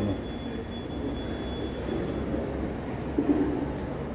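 Steady low rumble of a large indoor hall's background noise, with faint voices of other people in the distance.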